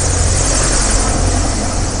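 Wind buffeting the microphone: a steady low rumble with hiss, no breaks.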